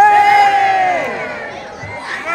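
Crowd of voices shouting one long cheer, a 'hooray' answering the 'hip hip' calls at a fire ceremony. It is loudest at the start and fades away over about a second and a half.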